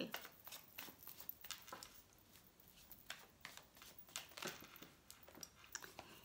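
Faint, scattered soft clicks and rustles of a deck of Lenormand cards being shuffled by hand.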